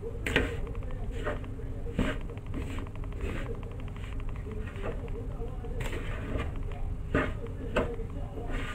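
Metal spoon stirring a dry mix of glutinous rice flour, grated coconut and sugar in a bowl: soft scraping, with a handful of sharp knocks of the spoon against the bowl at irregular moments.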